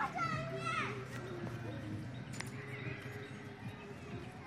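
Children playing and shouting, with one child's high-pitched shriek in the first second and quieter voices after it.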